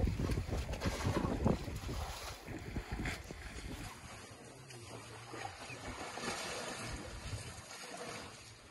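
Wind rumbling on the microphone, dropping to a fainter, steadier noise about halfway through.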